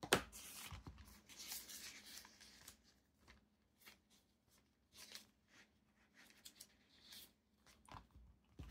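Thin journal pages being leafed through by hand, with soft paper rustling in the first few seconds and scattered small flicks and taps after, starting with a light knock.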